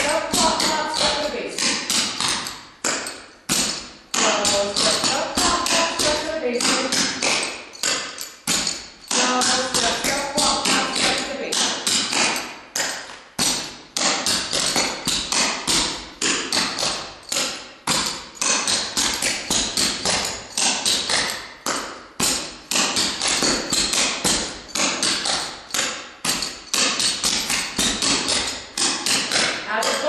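Clogging shoe taps striking a hardwood floor in fast, rhythmic runs of clicks with brief pauses: a burton (scuff, pop, step) combined with basic steps, alternating feet.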